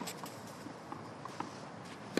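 Quiet tennis court ambience on clay, with a few faint clicks and scuffs of players' shoes on the court.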